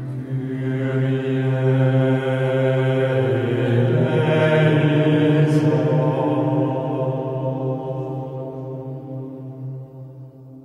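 Low chanting voices held on one steady, droning pitch. It swells through the middle and fades near the end.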